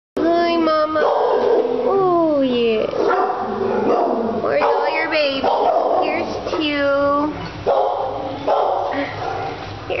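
Young puppies whining and yipping in high, swooping calls, mixed with a woman's high-pitched cooing voice.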